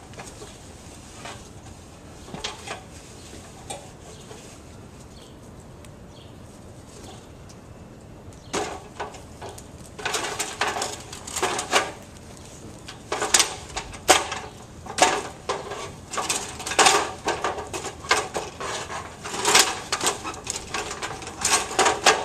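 Someone climbing down an extension ladder, with irregular knocks and clatter of feet and hands on the rungs. The knocking starts about eight seconds in after a quiet stretch and grows more frequent toward the end.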